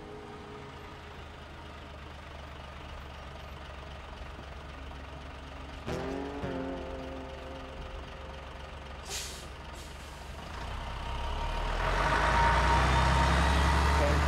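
A bus: a short hiss of its air brakes about nine seconds in, then its diesel engine swelling louder as it pulls away near the end. A single strummed guitar chord rings out about six seconds in.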